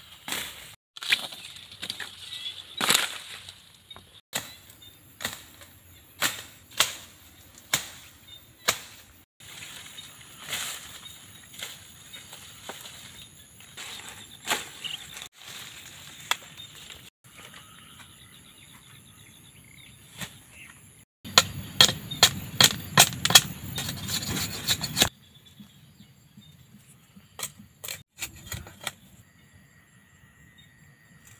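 Sugarcane stalks being chopped with a blade: sharp chops at an uneven pace of roughly one a second. About twenty seconds in comes a louder, dense run of cracking for about four seconds, then only a few faint clicks.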